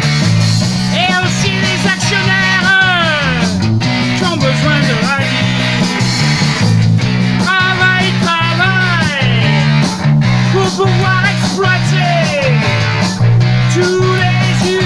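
Rock band playing: electric bass holding a steady low line under electric guitar and drums, with a high lead line that swoops up and down in pitch.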